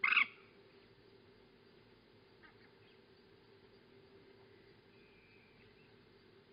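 A single short, loud animal call at the very start. After it there is only a faint outdoor background with a low, steady hum.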